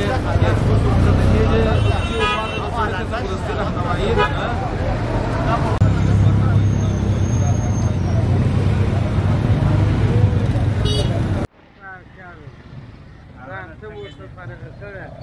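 Busy market-street traffic: a low rumble of motor rickshaw and motorcycle engines under a babble of voices, with a few short horn toots. About three-quarters of the way through it cuts off suddenly, leaving a much quieter stretch of nearby voices.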